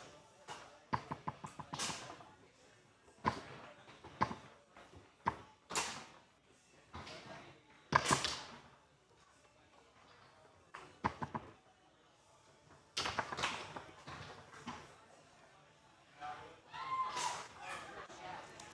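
Foosball table in play: sharp plastic clacks and knocks as the ball is struck by the men and rebounds off the table, with quick rattling runs of clicks as the rods are worked. The loudest single strike comes about eight seconds in.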